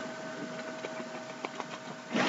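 Steady background hum and hiss with faint steady whining tones, broken by a few faint ticks.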